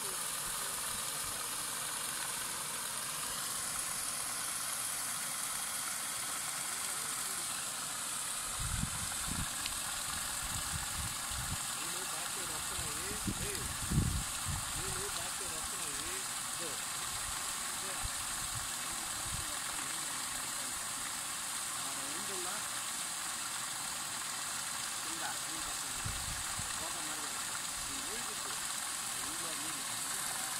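Solar-powered paddle wheel aerator churning pond water: a steady rushing splash of spray from the spinning paddle wheel. A few low thumps break in, the loudest about 14 seconds in.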